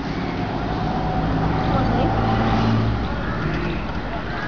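A motor vehicle's engine running close by, a steady low hum that is strongest through the middle, over outdoor background noise.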